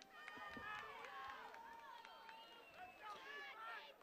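Faint, distant shouting voices of players and spectators across a football field, with no commentary over them.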